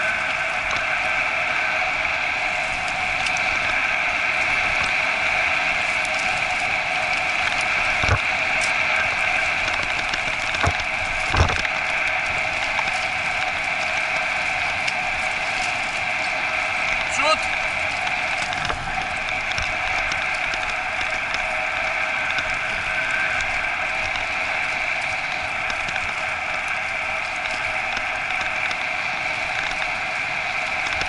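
Steady rolling and rattling noise of a dog-training cart running over a dirt trail behind a husky team, with a couple of sharp knocks from bumps about 8 and 11 seconds in.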